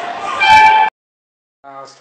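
Busy bus-terminal noise with a loud, short, high-pitched squeal about half a second in. Both cut off abruptly just under a second in, leaving silence, and a man's voice starts near the end.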